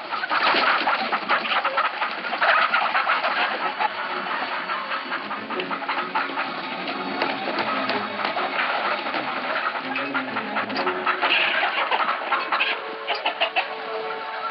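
Busy market sound mix of chickens clucking among the clatter of wooden crates and cages, with a music score underneath.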